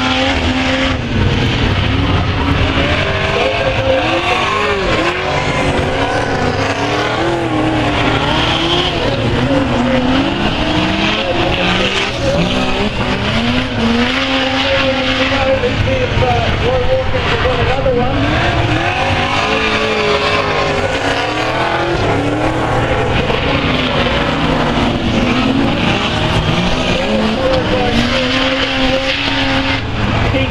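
Several speedway saloon race cars running hard on a dirt oval. Their engine notes overlap and rise and fall as the cars accelerate and ease off through the bends, a continuous loud racket.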